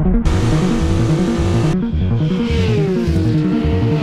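Cinematic music with a heavy drum beat, with a race car engine sweeping past over it; the engine's pitch falls steadily through the second half.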